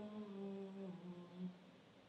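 A single voice holding a low hummed chant tone that sinks slightly in pitch, fades out about a second and a half in, and leaves near quiet.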